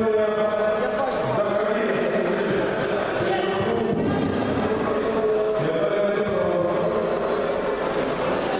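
Voices chanting in long held notes, echoing in a large sports hall over background chatter.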